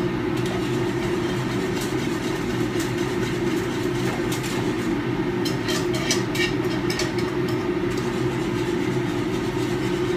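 Steady low rumble of commercial kitchen equipment, such as the range's exhaust hood fan, runs throughout. A wire whisk clicks against a metal pan several times around the middle as roux is whisked into hot gravy.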